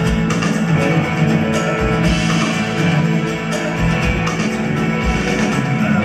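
Amplified live rock band playing an instrumental passage: guitars over bass and a drum kit, with the kick drum landing about once a second.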